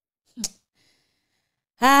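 A short breathy sigh or breath about half a second in, then silence, then a loud spoken exclamation of "Ay!" just before the end.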